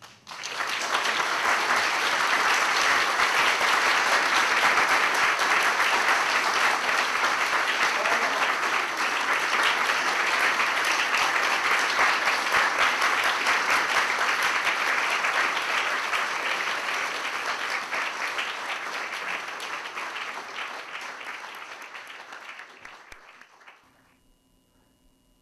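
A room audience applauding: sustained clapping that starts at once and fades away over the last few seconds.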